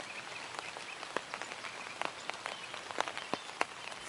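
Rain falling steadily, with scattered sharp ticks of drops striking close by at irregular intervals.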